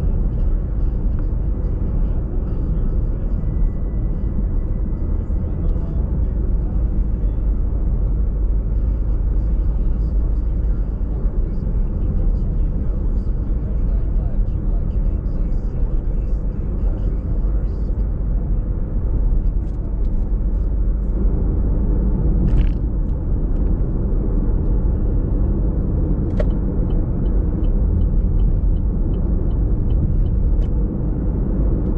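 Car interior driving noise: a steady low rumble of tyres and engine at a steady cruising speed. A couple of brief sharp clicks come in the last third.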